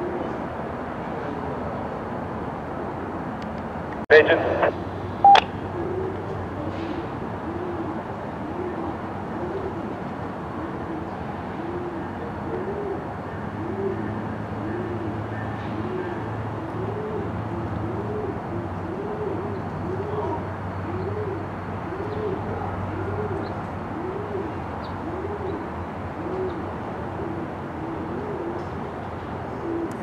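A bird cooing over and over, about once a second, over the low steady hum of a diesel switch locomotive's engine. Two sharp knocks come about four and five seconds in.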